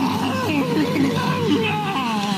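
A man's voice growling like an enraged bull, in a string of rough growls that rise and fall in pitch.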